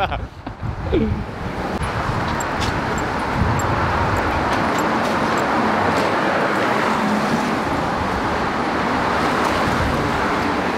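Steady street traffic noise that comes up about a second and a half in and holds evenly, with a brief voice sound just before it.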